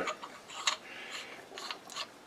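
A few faint light clicks of steel as an R8 ER40 collet holder and its collet nut are handled and turned in the hands.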